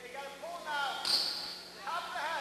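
Shouting voices of coaches and spectators in a gym, several overlapping calls rising and falling in pitch, with a brief high squeak about a second in.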